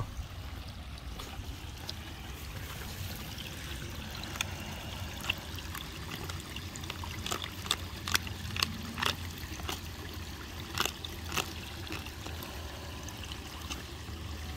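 Shallow creek water trickling steadily over stones, with scattered light clicks throughout.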